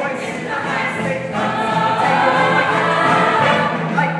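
A stage-musical ensemble cast singing together in chorus with musical accompaniment, moving into long held notes about a second and a half in.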